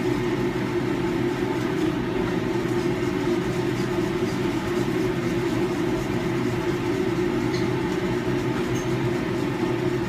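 Steady hum of a commercial kitchen's ventilation, most likely the exhaust hood fan running over the stove, constant in level with no clear breaks.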